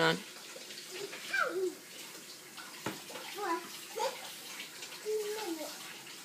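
A young child's quiet, short vocal sounds: a few brief rising and falling murmurs rather than words, with one light knock about three seconds in.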